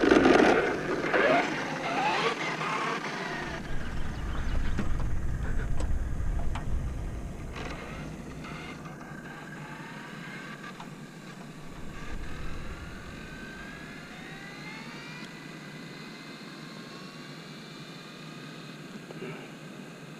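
Electric RC speed-run car's brushless motor and drivetrain whining as the car launches, the pitch rising as it accelerates hard away down the runway. The sound then drops to a fainter whine with tones still rising as the car runs toward top speed in the distance.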